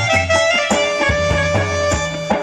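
Live instrumental accompaniment with no singing: an electronic keyboard melody over a low bass, with regular hand-drum strokes.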